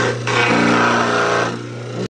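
Champion juicer's motor running with a steady hum while frozen orange sections are pushed through it with the plunger. From about half a second in to about a second and a half, a loud grinding as the frozen fruit is crushed.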